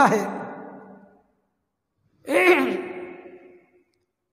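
A man's voice: the last word of a sentence fading out, then after a pause a single drawn-out, sigh-like vocal sound that falls in pitch, then holds and fades away.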